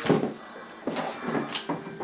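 A sharp knock at the start, then a few softer knocks and rustles.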